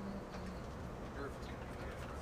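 Steady engine and road noise inside a moving coach bus, with a few short low tones near the start.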